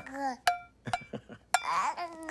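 A baby banging on a cooking pot with a utensil: about four sharp metallic knocks, the first ringing briefly, with a short baby babble at the start.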